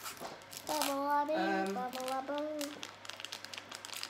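A child singing a short wordless tune in held notes that step up and down in pitch for about two seconds, while a packet crinkles as it is handled.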